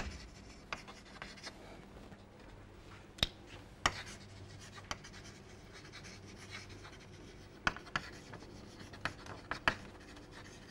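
Chalk writing on a chalkboard: faint scratching broken by sharp, irregular taps as the chalk strikes the board, about nine in all. A faint steady hum lies underneath.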